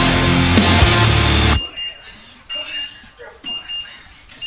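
Loud heavy-metal music with drums cuts off abruptly about one and a half seconds in. It leaves a high-pitched electronic alarm beeping in short pairs, about once a second.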